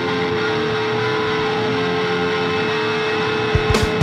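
Heavily distorted electric guitar noise with one sustained steady note, the opening of a 1990s noise-rock recording. A few sharp drum hits come in near the end as the full band starts.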